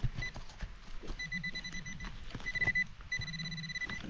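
Handheld metal-detecting pinpointer sounding a steady high-pitched tone in several stretches, a brief one first and then three longer ones, as it is probed through the loose soil of a dig hole: it is signalling more metal in the hole. Soft scraping and clicking of soil and needle litter under the gloved hand.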